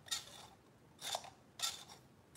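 Small wooden novelty figure's push mechanism working as its feet are pushed in, giving three short clicks or snips.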